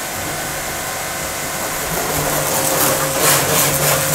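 Eurofine electric high-pressure washer running, its motor and pump humming steadily while the gun sprays a hissing jet of water onto a car's panels and wheel. The spray noise grows a little louder and brighter in the second half.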